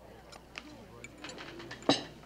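A glass set down on a dining table with one sharp knock just before the end, over faint murmur and small clinks.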